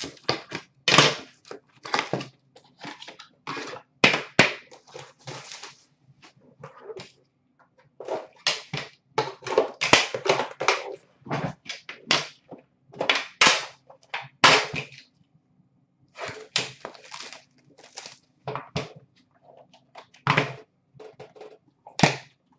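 Hands unpacking an Upper Deck The Cup hockey card box: cardboard and packaging rustling and scraping in irregular bursts, with clacks and knocks as the metal tin is slid out and its lid opened.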